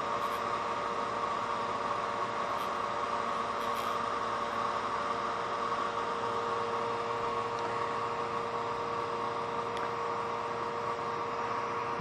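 Rotating neodymium-magnet drum and its drive motor spinning steadily at about 7,000 RPM: an even mechanical hum with several steady tones held over it.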